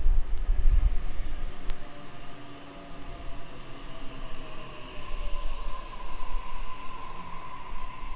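Sydney Trains Tangara double-deck electric train moving along the platform, a low rumble at first and then electric motor whine in tones that slowly fall in pitch as the train slows.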